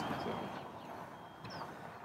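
Faint outdoor background noise, with a brief faint high chirp about one and a half seconds in.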